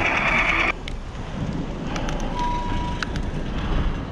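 Guitar music cuts off abruptly under a second in, leaving wind and road noise from riding a bicycle, heard on the camera's microphone. A brief high steady tone sounds near the middle.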